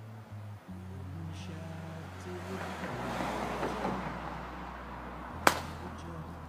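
Golf club swung through the air with a swelling swish, then striking a ball off a practice mat with one sharp click near the end, over soft background music.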